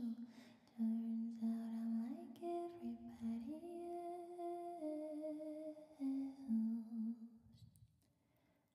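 A woman humming a slow, wordless melody close to a microphone. She holds long, soft notes that step up and down and then fade out shortly before the end.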